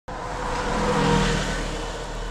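City bus driving past close by: engine and tyre noise with a faint steady whine, swelling to a peak about a second in and then fading away.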